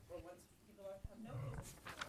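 Faint, broken-up speech in short snatches from people talking off-microphone.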